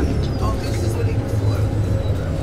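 Steady low engine and road rumble inside a moving tour bus's cabin.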